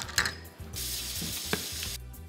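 A few light clicks of plastic measuring cups being handled, then a kitchen faucet running steadily for about a second.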